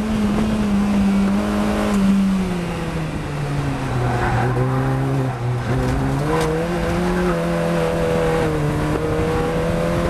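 A Fun Cup race car's engine heard from inside the cockpit. It runs at high revs, then drops in pitch in steps as the car brakes and downshifts for a slow corner. It holds low through the turn, then climbs again as the car accelerates out about six seconds in.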